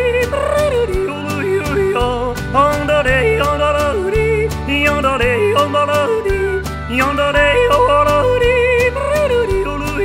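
A man yodelling, his voice leaping quickly up and down between low and high notes, over a country band backing with steady bass notes and an even beat.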